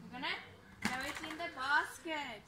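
A woman's voice making short, indistinct utterances, with one sharp knock a little under a second in.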